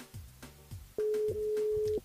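Telephone ringback tone over the studio line: a steady beep of about a second, starting about halfway through. The called contestant's phone is ringing, not yet answered. Background music with a regular beat plays underneath.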